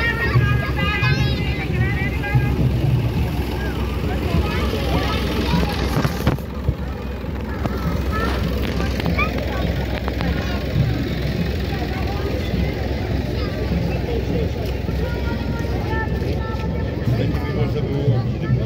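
Engines of slow-moving parade vehicles, among them an old tractor, running steadily close by, with crowd voices and chatter over them.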